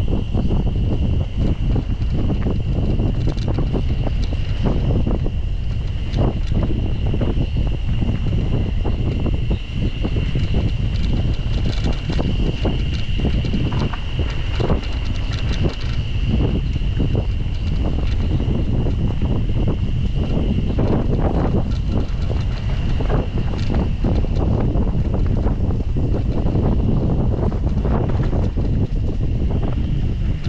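Wind rushing over the microphone of a camera on a mountain bike riding down a dirt forest trail, with frequent clatter and knocks from the bike going over bumps. A steady high-pitched buzz runs underneath.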